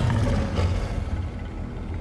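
Dark background music score: a low rumbling drone that slowly eases off.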